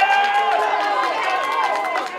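Football spectators shouting over one another, several raised voices at once with long held calls.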